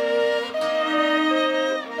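Belarusian folk instrumental music: a bright melody played over a steady held drone, with no singing. The phrase breaks off briefly just before the end and starts again.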